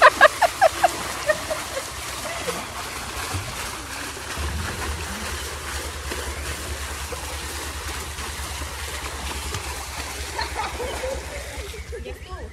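Shallow pool water splashing and washing around a wading toddler and adult, a steady wash of water noise. A few short, high-pitched vocal calls sound in the first second.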